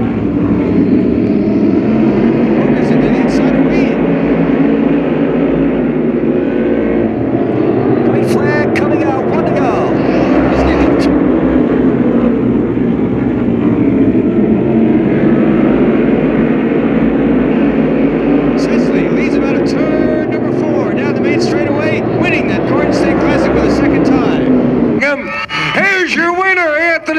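A pack of asphalt modified race cars running hard together, their V8 engines making a loud, layered drone whose pitches rise and fall as the cars go through the turn.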